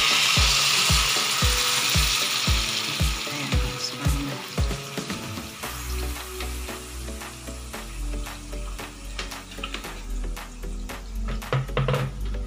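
Ground pork sizzling in a wok on a gas stove, loud at first and dying away within a few seconds as water fills the pan. Background music with a steady beat runs underneath, its pattern changing about five seconds in.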